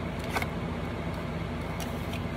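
A steady low background rumble, with a few faint clicks about half a second in and again near the end as a small glass cologne bottle is handled.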